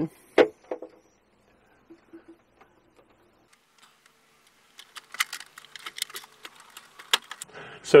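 Jack plugs and leads being pushed into the side ports of a Carpuride dashboard screen: a run of small clicks and rattles starting about halfway through.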